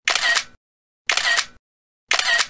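Camera shutter click, twice, about a second apart, with dead silence between.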